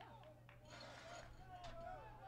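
Faint ballpark ambience: distant voices over a steady low hum, with a brief hiss about halfway through.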